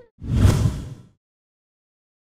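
A whoosh transition sound effect with a deep low end, swelling and fading over about a second.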